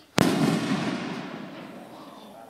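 A single loud firework bang about a fifth of a second in, from a firework tube set in the ground, followed by an echo that fades away over about a second and a half.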